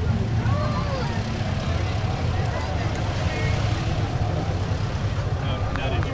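Chatter from a crowd of people over a steady low rumble, with no single voice standing out.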